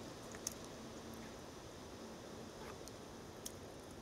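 Faint handling sounds of fingers skimming duckweed off the surface of a bucket of pond water and shaking it off, with a couple of small clicks or drips.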